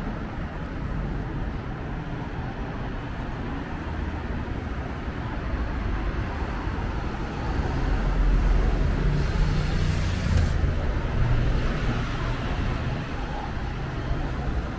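Street traffic on a busy city avenue: a steady hum of cars driving past that swells into a louder low engine rumble from about halfway through, as vehicles pass close. A short hiss comes about ten seconds in.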